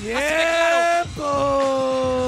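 A voice over the PA letting out a long, drawn-out howl-like cry: one note sweeps upward and is held for about a second, then after a brief break a second long note is held, sagging slowly in pitch.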